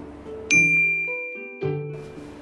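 A single bright bell-like ding sound effect about half a second in, ringing on and fading away, over light background music.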